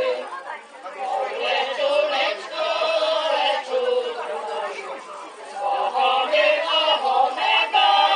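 Women's folk vocal group singing together a cappella, with long held notes.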